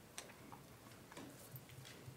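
Near silence in a meeting room, with a few faint scattered clicks and light rustles of handling.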